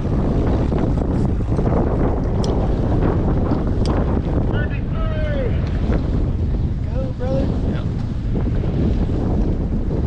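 Steady wind noise on the microphone over the low rumble of a bass boat running on the lake, with water noise. Short pitched calls or distant voices come through briefly in the middle.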